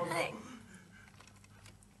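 A man's voice trails off just after the start, then near silence with a few faint, light clicks in the second half.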